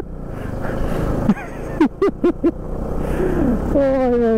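Motorcycle riding on a road: a steady low engine rumble under rushing wind and road noise, with a few short vocal sounds from the rider in the middle.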